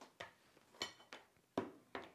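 A handful of short, irregular plastic clicks and knocks as the motor top is lifted off a mini food chopper's plastic bowl, the loudest knock about three quarters of the way through.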